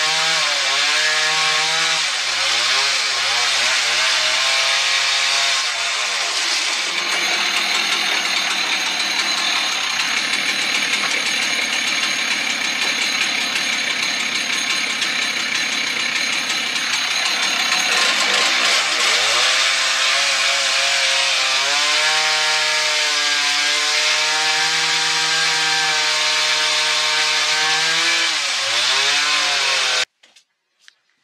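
Husqvarna two-stroke chainsaw cutting into a log, its engine pitch dipping and recovering as it is pushed through the wood, with a higher, steadier stretch of revs from about 7 to 18 seconds. The saw is working with a dull chain, clogging in the cut.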